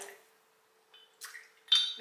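Glass clinking as a shot glass and liquor bottle are handled: a faint clink about a second in, then a sharper, ringing clink near the end.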